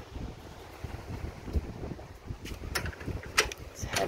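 Wind buffeting the phone's microphone with a low rumble, and a few sharp clicks in the second half.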